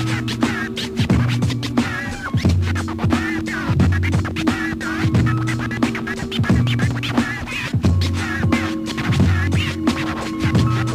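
Hip hop beat with a repeating bass line and turntable scratching over it.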